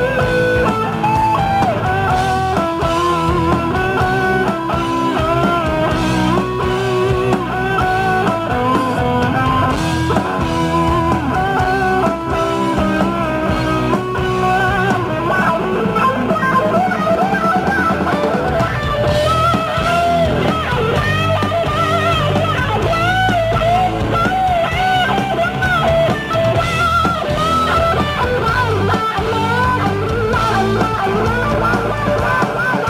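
A live rock band playing, led by an electric guitar picking melodic lead lines with bent and wavering notes over bass and drums.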